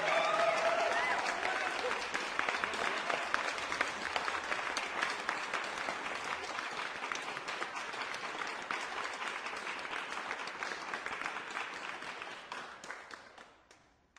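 Crowd applause, a dense crackle of clapping, with a brief voice in the first couple of seconds; it fades out over the last two seconds.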